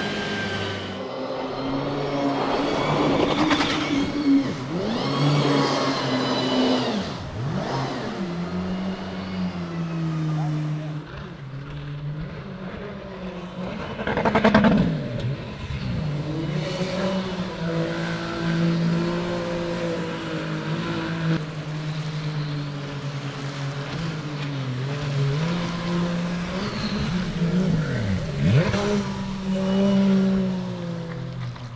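Mini jet boat's engine running hard on the river, the pitch climbing and dropping as it revs. It swells loudly as the boat passes by about halfway through and again near the end.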